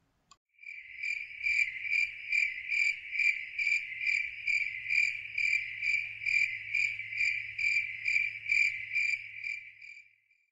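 Insect chirping: a high, steady trill that pulses about twice a second, fading in just after the start and fading out at the end.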